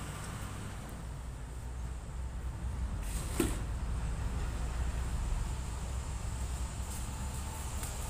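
Faint, steady low rumble of background noise, with a single short click a little over three seconds in.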